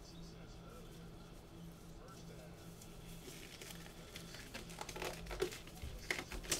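Faint room tone with a steady low electrical hum; from about halfway, faint crinkling and clicking handling noises come more and more often.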